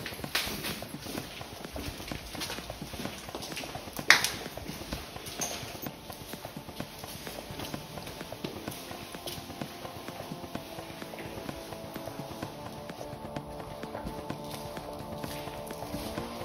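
Footsteps on hard floor and stairs, with a single sharp knock about four seconds in. Soft background music with sustained tones comes in around halfway.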